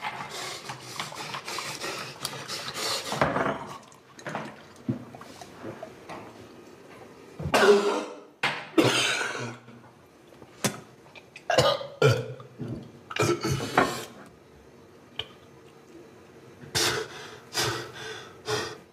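A man retching and gagging, with coughs and heaving breaths, in irregular bursts with pauses between them; the loudest heave comes about eight seconds in.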